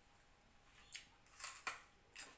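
A few short, crisp crackles and clicks from the second second on, made as a person handles and eats food at a dinner table.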